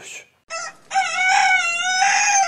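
A rooster crowing once, a long, loud crow starting about half a second in, played as a transition sound effect.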